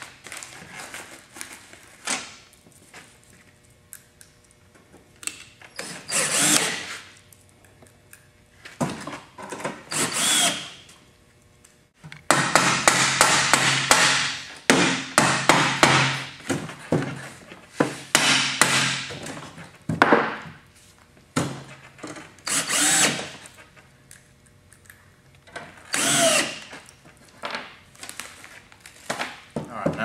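Cordless drill driving metal screws into the steel end panel of a gas forge in several short bursts. A longer stretch of rapid sharp strikes in the middle is hammer tapping to line up the holes.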